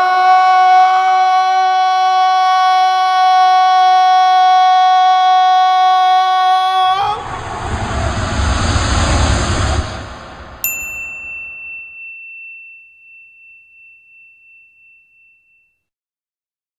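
Title-sequence sound effects: a long held pitched tone rich in overtones, cut off about seven seconds in by a whoosh with a deep rumble. About three seconds later a single bright ding rings out and fades away slowly.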